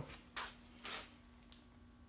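Two short, soft rustling noises about half a second apart, over a faint steady hum.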